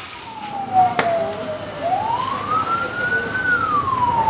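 An emergency vehicle's siren in a slow wail: one tone falling, rising steadily for about a second and a half, then falling again. A single sharp click about a second in.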